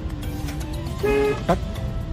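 Car horn giving one short toot about a second in, over the low rumble of the car driving.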